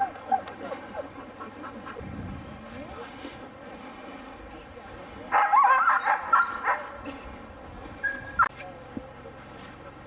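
Sled dogs in harness yipping and whining, with a loud burst of excited yelps about five seconds in lasting over a second, and another short yelp a couple of seconds later.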